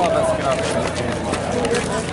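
Indistinct conversation: several people talking outdoors while walking, voices overlapping and not clearly made out.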